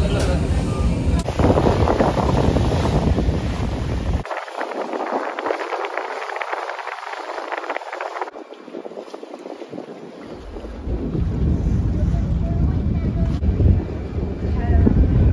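Wind on the microphone and water noise on a Star Ferry harbour crossing, heard in several short clips. A deep rumble drops out about four seconds in, leaving a hiss of wind and water, and comes back about ten seconds in.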